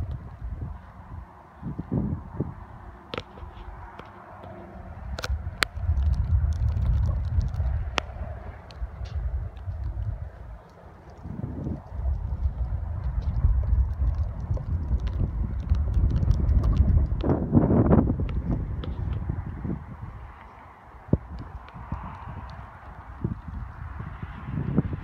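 Wind buffeting the microphone, a rumble that comes and goes in gusts, with scattered clicks and knocks.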